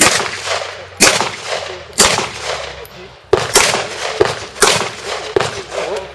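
Pistol shots fired one-handed, strong hand only, in a string about a second apart with a quicker pair of shots partway through, each crack trailing off into an echo.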